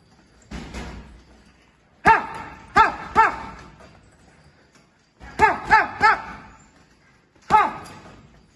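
Gloved punches landing on a hanging leather punch bag in quick combinations, each hit paired with a short sharp shout of 'ha!'. A softer single hit comes first, then two runs of three hits, then one more near the end.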